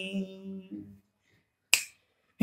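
A man's unaccompanied singing voice trailing off at the end of a held note, then a pause broken about three-quarters of the way through by one short, sharp click.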